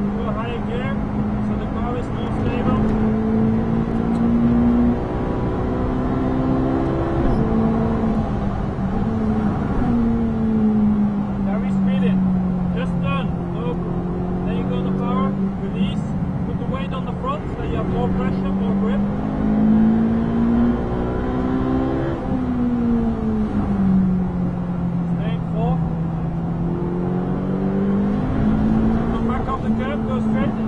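Ferrari 458 Italia's 4.5-litre V8 heard from inside the cockpit at speed on track. The engine note climbs under power, drops sharply at upshifts about seven and eight seconds in and again past twenty seconds, and falls away steadily as the car slows for bends, over steady tyre and wind noise.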